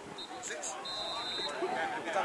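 Footballers' distant shouts across the pitch, with a short, steady high-pitched whistle about a second in.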